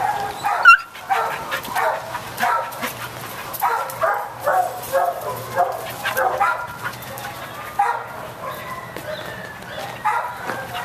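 Dogs barking in a run of short barks, a few a second, the loudest and sharpest just under a second in.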